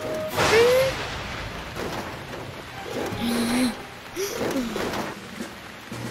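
Cartoon soundtrack: background music over a steady hiss of rain, with a sudden noise burst about half a second in and a few short character vocal sounds later on.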